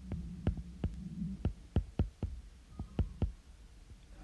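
A stylus tapping on a tablet's glass screen while handwriting, about ten short, uneven clicks. A faint low hum sounds in the first second.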